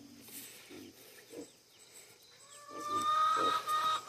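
Farmyard livestock calling: pigs grunting and chickens. The first half is quiet, then about two and a half seconds in the calls grow louder, with one long, steady high call that runs on past the end.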